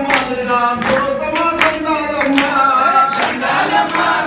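A group of devotees singing a devotional bhajan, a lead voice on a microphone with the others joining in, and steady hand clapping in time with the song.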